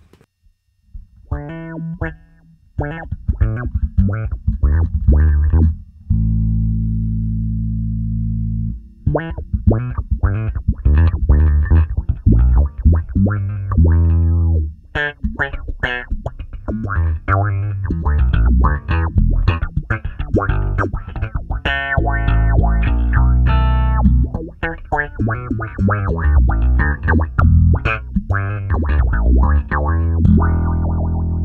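Six-string electric bass played in short, funky plucked notes through a Zoom B6's pedal resonance filter, the filter worked by an expression pedal under the foot, with one low note held for a few seconds about a fifth of the way in.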